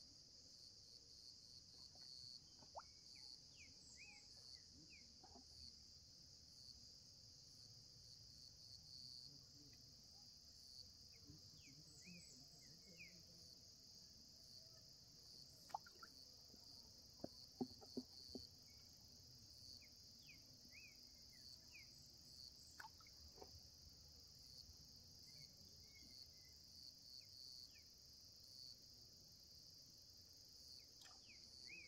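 Faint, steady high-pitched insect chorus from the riverside vegetation, with scattered brief high chirps and a few sharp clicks around the middle.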